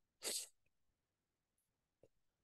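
A man's quick breath in, a short rush of air lasting about a quarter of a second just after the start, then near silence.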